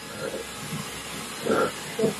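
Handheld hair dryer blowing a steady rush of air at close range, drying setting spray on the face.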